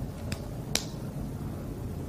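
Two short, sharp clicks about half a second apart, the second louder, over a steady low background hum.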